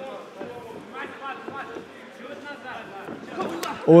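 Faint, distant shouting voices in a large hall: spectators and coaches calling out to the fighters during an MMA bout. A commentator's loud exclamation cuts in at the very end.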